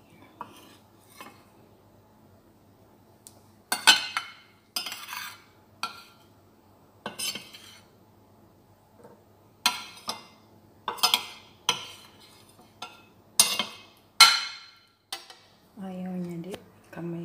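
A metal spoon clinking and scraping against ceramic bowls as chopped mango and grapes are spooned out. There are about a dozen sharp clinks, starting about four seconds in, with short quiet gaps between them.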